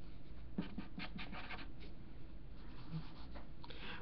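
Handwriting on paper: a run of short scratchy writing strokes about half a second to a second and a half in, then a couple more near the end.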